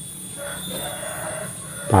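A rooster crowing once, a single call lasting about a second and a half.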